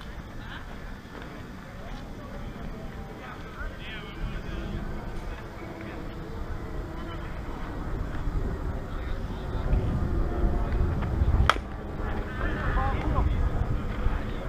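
Softball bat striking a pitched ball: one sharp crack late on, with distant players' voices around it.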